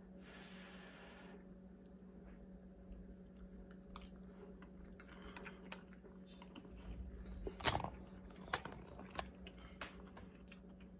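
A person chewing a mouthful of tender pork chop, mashed potatoes and green beans, faint, with a few sharper mouth clicks in the second half.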